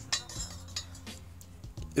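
A few light metallic clinks and taps as a small triangular steel gusset plate is handled and set against a steel-tube frame joint, over quiet background music.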